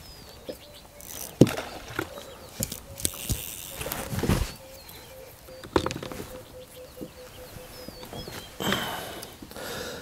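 Hands handling fishing line and rod close to a clip-on microphone: scattered light knocks and rustles at irregular intervals, with a few faint bird chirps.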